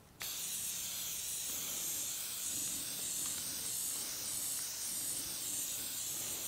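Aerosol can of matte black spray paint spraying in one long, steady hiss that starts abruptly just after the beginning. The can is held at a distance to lay an even coat.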